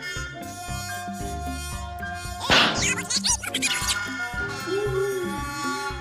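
Cartoon background music with a steady bouncing bass beat. About two and a half seconds in, a loud zinging sound effect cuts in and lasts about a second and a half.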